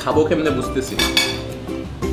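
A metal knife clinking and scraping against a ceramic plate as food is cut, with background music underneath.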